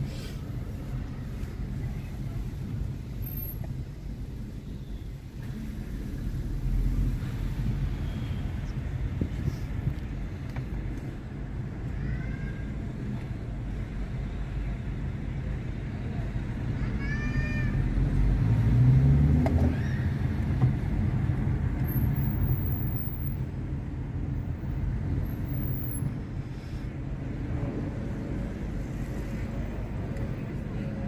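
Low engine and road rumble heard from inside a car moving in slow city traffic, swelling to its loudest about nineteen seconds in. A few faint short high chirps sound around twelve and seventeen seconds.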